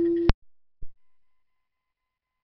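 A steady electronic tone cuts off abruptly with a click about a third of a second in. A single soft thump follows near the one-second mark, then the sound drops to silence.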